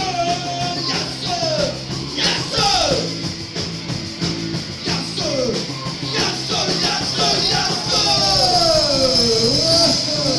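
Punk rock band playing live: a singer's voice with gliding, wavering notes over electric guitar and drums.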